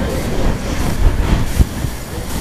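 An audience laughing together, a steady wash of crowd laughter.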